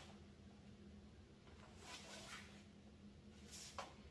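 Near silence: room tone with a faint steady low hum and two brief soft brushing sounds, about two seconds in and near the end.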